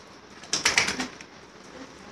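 A short, loud burst of rapid flapping and rustling, starting about half a second in and lasting under a second.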